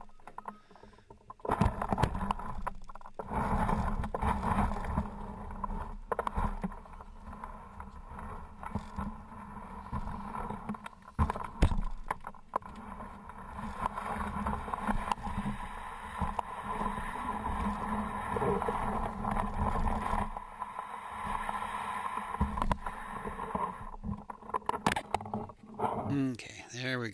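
Plastic sled loaded with wet snow and ice being dragged by two cords, scraping and bumping up concrete steps and then sliding over packed snow. Steady rough scraping with frequent knocks, starting about a second in and stopping shortly before the end.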